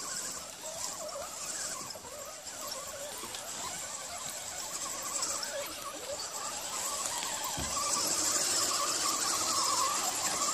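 Electric motors and gear drivetrains of two Axial SCX10 RC crawlers with Holmes Hobbies motors whining as they crawl, the pitch wavering with the throttle and the sound growing louder toward the end.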